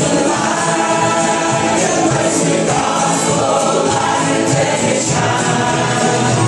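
Live bluegrass gospel music: acoustic guitars and upright bass playing with group singing.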